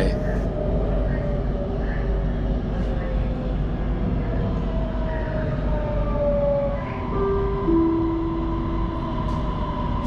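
Electric metro train running on an elevated line: a steady rumble under thin motor whines that slide slowly down in pitch as the train slows to stop at the next station.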